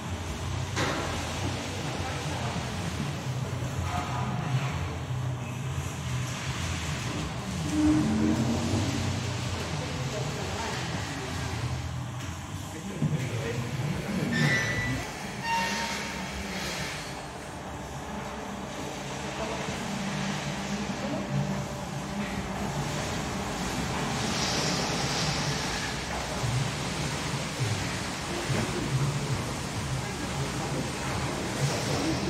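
Dairy milking parlour in operation: a steady low hum from the milking machinery, with indistinct voices in the background.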